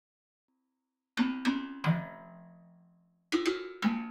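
Ableton Note's synthesized Berimbau preset played from the touch pads: two groups of three plucked, twangy notes that ring and fade. The first group starts about a second in and the second comes near the end.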